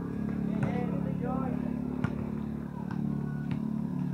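A small engine idling steadily, with brief voices in the first half and a couple of sharp clicks.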